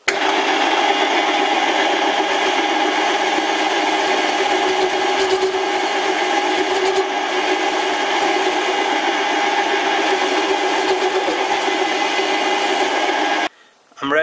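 Metal lathe running under power, its tool turning a lead-in chamfer on a steel arbor: a steady motor and gear whine with cutting noise. It starts suddenly and cuts off suddenly near the end.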